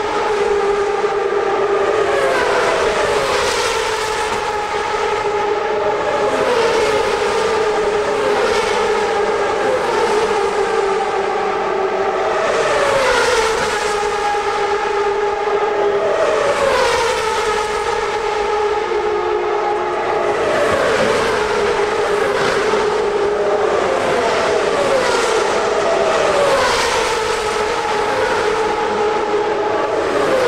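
CART Champ Car turbocharged V8 engines at high revs passing one after another on the track. Each pass ends in a falling pitch, about every three to four seconds, over a steady engine note.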